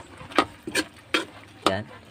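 Metal ladle knocking and scraping against an aluminium wok while stirring a simmering stew, a few irregular clinks about a second apart.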